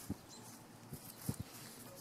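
Quiet outdoor background with a few short, soft low knocks about a second and a half in.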